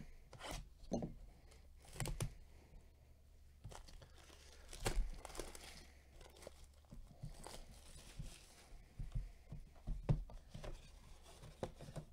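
The wrapping of a 2020 Bowman Chrome baseball hobby box being torn open and crinkled by hand, in short irregular rustles and snaps.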